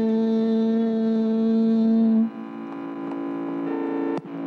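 A Carnatic vocalist holds one long steady note for about two seconds, then stops, leaving the steady pitched drone of the accompaniment sounding alone.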